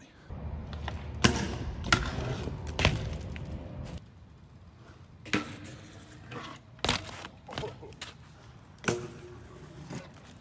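BMX bikes riding a concrete ledge: tyres rolling on concrete and a series of sharp knocks as the wheels drop onto and off the ledge. The knocks are most frequent and loudest in the first few seconds, then come singly every second or two.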